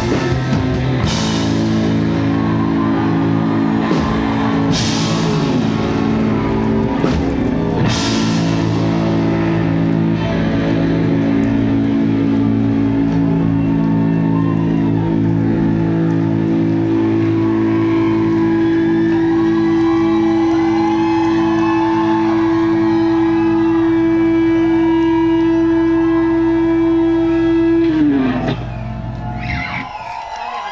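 Live rock band holding out the closing chord of a song: electric guitars and bass ringing on long sustained notes, with three cymbal crashes in the first eight seconds. Near the end a high held tone slides down in pitch and the sound drops away.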